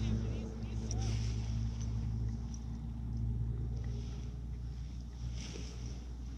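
A distant engine droning steadily at an even pitch, fading out about four seconds in, over a low, steady wind rumble on the microphone.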